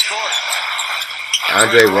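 Basketball game broadcast audio playing in the background: steady arena crowd noise with a faint commentator's voice. A man starts talking over it about a second and a half in.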